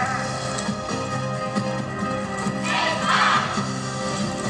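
Yosakoi dance music played over an outdoor stage loudspeaker, with a steady, sustained bass line under a layered backing track. A brief burst of noise swells up about three seconds in.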